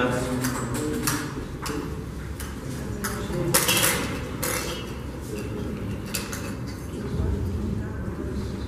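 Hollow plastic draw balls being handled over a glass bowl, with a series of separate sharp clicks and knocks as they tap each other and the glass.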